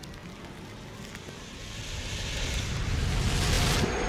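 A rushing, whoosh-like noise from a cartoon soundtrack run through heavy audio effects. It starts right after the music cuts off and swells louder over about three seconds.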